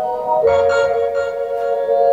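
Held synth-keyboard chords from a beat playing back, all made from one keyboard sound. About half a second in, a fuller, brighter chord comes in as another keyboard layer is added on top.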